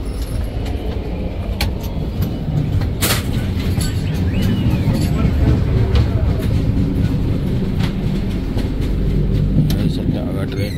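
Steady low rumble inside an Indian Railways AC sleeper coach, growing a little louder in the second half, with a few sharp knocks, the loudest about three seconds in.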